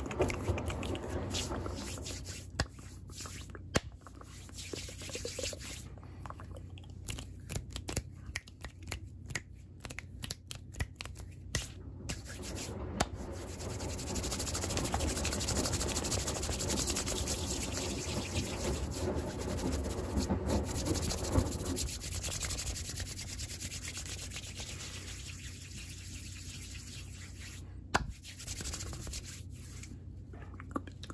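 Hands rubbing and brushing right against the microphone, over the low steady hum of a running washing machine. A run of sharp clicks fills the first half, and the rubbing is loudest in the middle before easing off.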